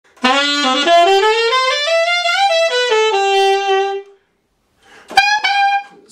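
Selmer Series II alto saxophone playing a quick run of notes that climbs and then steps back down to a held note. After a short pause, one brief higher note.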